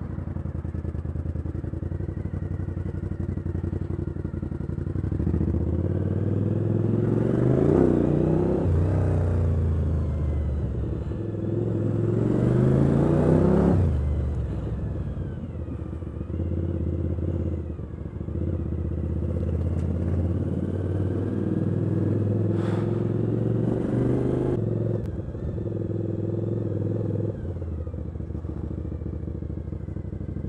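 Motorcycle engine heard from the rider's seat while riding slowly through city traffic, its note climbing twice as it accelerates, around 8 seconds in and again around 13 seconds, then dropping back, with smaller rises later.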